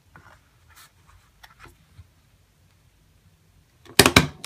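Faint rustling and light taps of cardstock being shuffled and lined up on a tabletop, then a sharp click at the very end as a desktop stapler is pressed down to staple the sheets.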